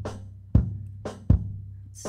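Recorded kick drum playing back through an EQ, two hits about three-quarters of a second apart, over a steady low tone. The EQ is being set to tame the kick's boominess.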